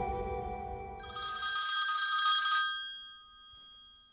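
The song's last notes fading out, then about a second in a bright bell-like chime with several ringing tones that swells and slowly dies away.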